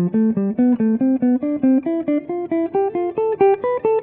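Hollow-body archtop electric jazz guitar playing the C major scale in diatonic thirds: single picked notes in an even run, about five a second, zigzagging steadily upward in pitch.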